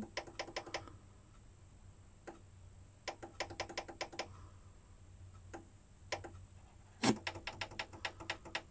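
Faint clicking from the FM tuning buttons of a Sanyo MCD-Z330F boombox as they are pressed, in quick runs and single clicks while the radio steps off station and down the band. A louder knock comes about seven seconds in as the finger moves to the tuning-up button.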